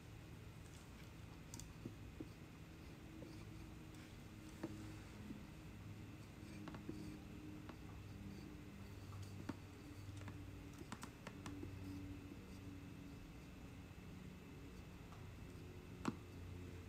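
Faint scraping of a metal loop trimming tool shaving clay from the inside of a pierced clay candle holder, with scattered small clicks, over a low steady hum.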